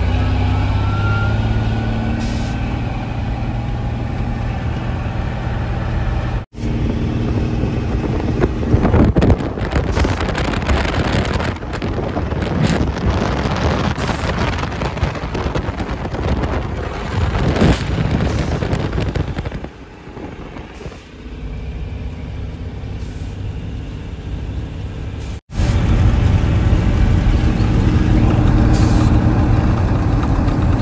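Heavy water truck's engine running as it drives down a dirt road. A steady low hum gives way to a noisier stretch of wind, road rumble and rattling, then the steady hum returns. The sound cuts out abruptly twice.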